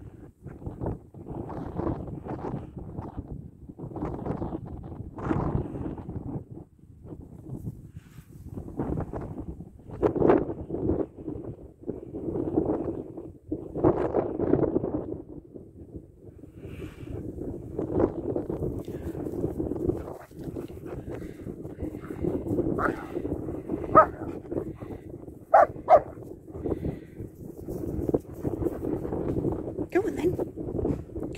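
Dog barking and whining in play, with a few sharp, high yips in quick succession a little over three-quarters of the way through.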